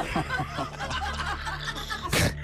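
Men laughing, a broken run of chuckles and snickers picked up close on studio microphones.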